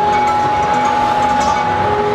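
Amplified sound from a live flamenco performance: a single steady, unwavering tone held right through, over a dense noisy background, while the singer is silent.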